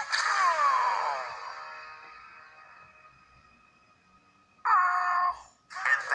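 Trailer soundtrack played through a screen's speaker and picked up by a phone: a sliding note rings out and fades away over about four seconds. A short loud held note comes in near the end, and talk starts again right at the end.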